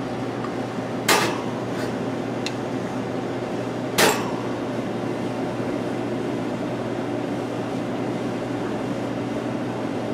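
Two sharp knocks, about a second in and again about four seconds in, of glassware set down hard on the espresso machine's steel drip tray or the counter, with a couple of faint clicks in between. A steady machine hum runs underneath.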